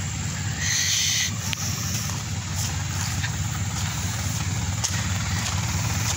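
Isuzu lorry's diesel engine running with a steady low rumble as the loaded truck drives slowly along a rough dirt track, with a brief hiss about a second in.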